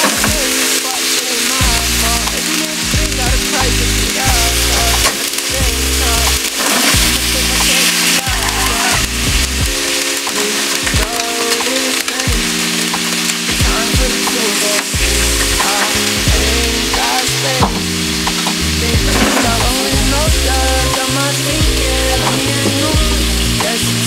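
Raw chicken pieces sizzling steadily in hot oil in a nonstick frying pan as more pieces are laid in. Hip hop music with a steady beat plays underneath.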